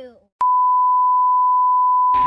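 An electronic beep: one steady high-pitched tone that starts with a click about half a second in and holds unchanged after that, preceded by dead silence.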